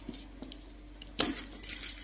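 Crayons clattering and clicking against each other and the mat as a hand moves them: a few small clicks, a sharper clack about a second in, then a quick run of light clicks.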